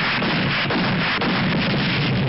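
A steady, dense din of gunfire and artillery fire, with no single shot standing out.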